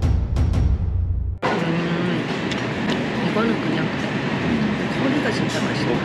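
A short dramatic music sting with deep drum hits, cutting off suddenly about a second and a half in. Then a busy restaurant's steady background noise with indistinct voices and a few faint clinks of cutlery.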